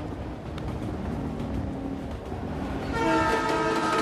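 Train rushing past with a rumble that grows louder, then its horn blowing a steady several-note blast from about three seconds in.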